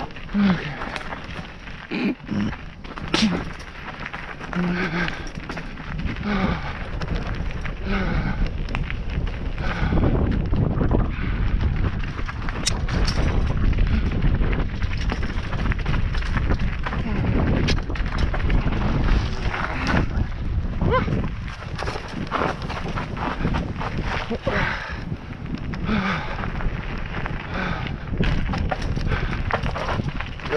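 Mountain bike rolling over a rough dirt and gravel trail: crunching tyres and frequent clatter and knocks from the bike, over a steady rumble of wind on the camera microphone that grows louder about a third of the way in.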